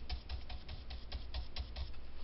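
Ink blending brush dabbed rapidly onto cardstock, a steady run of soft taps at about seven a second.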